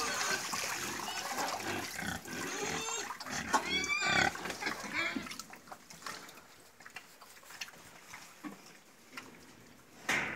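Pigs grunting and squealing as they crowd a trough, with water pouring from a watering can into it at the start. The squeals come in the first few seconds; after about five seconds it falls much quieter, with only faint scattered noises.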